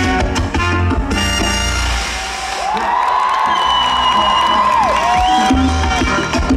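Live salsa band playing. About two seconds in, the bass and drums drop out for a break of long held, bending notes, and the full band comes back in near the end.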